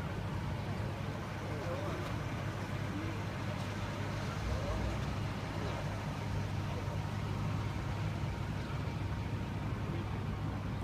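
Steady low rumble of idling car engines, with a faint murmur of men's voices from the crowd.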